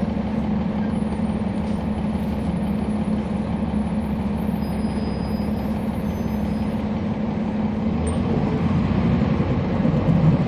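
Cummins ISL9 diesel engine of a NABI 40-SFW transit bus, heard from inside the bus, running with a steady drone that grows a little louder near the end.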